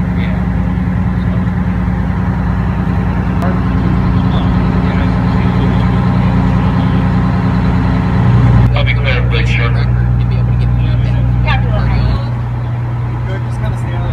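Steady low drone of a large vehicle's engine idling. People talk in the background for a few seconds from a little past halfway, and the engine sound drops a little near the end.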